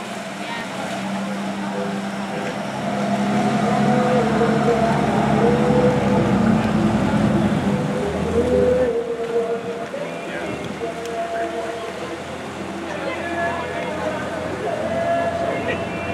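Fireboat's engines running as it pulls away under power, growing louder a few seconds in and easing off after about nine seconds.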